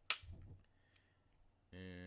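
One sharp metallic click from handling a Glock 23 pistol that has just been cleared, with a brief ring after it. Near the end a short hummed vocal sound.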